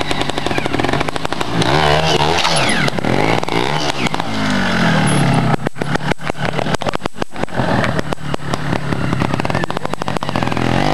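Trials motorcycle engine running with a fast, pulsing idle, revved in short rising and falling bursts about two and four seconds in. A little past halfway it turns choppy and stuttering, then settles back to the pulsing idle.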